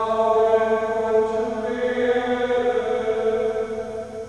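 Voices chanting a psalm verse in German: long held notes that step to new pitches twice, with a reverberant church acoustic. The phrase ends and dies away at the very end.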